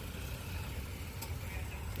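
Steady low background rumble with a faint tick a little past halfway.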